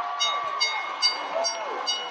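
Cage-side bell struck about five times, a little over two strikes a second, each strike ringing on, over shouting from the crowd: the signal that the fight is over.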